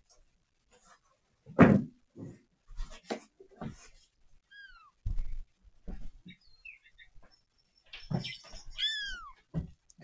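Young kittens mewing: two short, high mews that fall in pitch, one about halfway through and one near the end, with a few faint chirps between. Scattered thumps and knocks of someone moving about the room.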